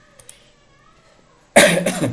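A man coughing once, a single hard cough near the end, after a quiet stretch with two faint clicks.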